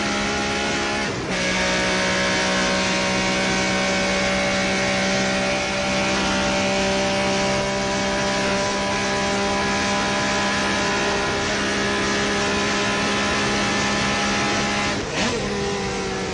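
A car engine running hard at high, steady revs. Its note breaks briefly at a gear change about a second in and again near the end.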